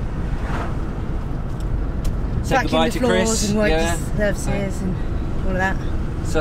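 Steady low road and engine rumble inside the cab of a moving campervan, with a voice speaking briefly from about halfway through.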